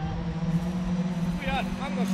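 Rally car engine held at a steady note as the car approaches along the stage, with people's voices briefly near the end.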